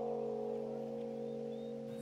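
Soft background score music: a sustained chord of several held notes, fading slowly.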